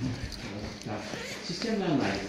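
A man's voice, speaking or muttering indistinctly, with a few light knocks near the start.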